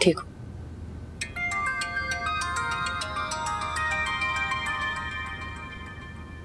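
Mobile phone ringtone: a chiming melody of quick, bright notes that starts about a second in and rings on for several seconds before fading.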